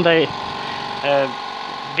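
Small oil-free twin-head air compressor on a green tank running with a steady, even mechanical hum, broken by two short spoken words.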